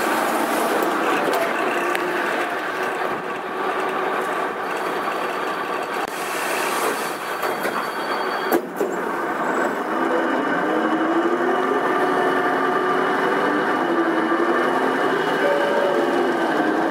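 Karosa B931E city bus running: a steady hum of engine and road noise, with a whine that rises and falls in pitch in the second half and a single sharp click a little past halfway.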